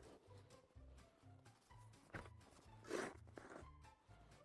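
Quiet background music with a steady low bass pattern. A snow shovel scrapes across packed snow in two short swishes, about two and three seconds in.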